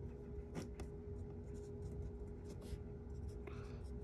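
Felt-tip marker writing on a whiteboard: a few short, faint scratching strokes, over a steady low electrical hum.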